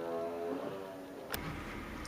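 A faint held tone fades away, then a click about two-thirds of the way in. After the click comes the steady low rumble of a car running, heard from inside the cabin.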